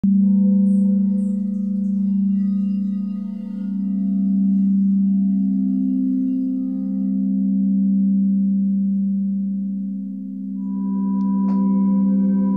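Singing bowl sounding one long low tone with faint overtones, its loudness slowly swelling and fading in waves. About ten and a half seconds in a second, higher-pitched bowl joins and is struck once near the end.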